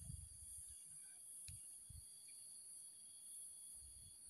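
Near silence: faint outdoor background with a steady high-pitched hiss and a few soft low thumps.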